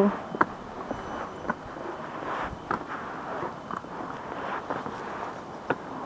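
Footsteps of a hiker climbing mossy stone steps and walking on a dirt trail: irregular scuffs and knocks of shoes on stone and earth over a faint steady background hiss.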